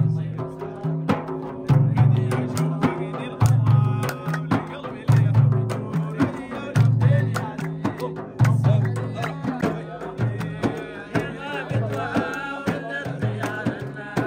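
Hand-played frame drums (tar) beating a steady rhythm: a deep bass stroke about every second and a half, with sharper strokes between. Hand clapping and men's singing voices run over it.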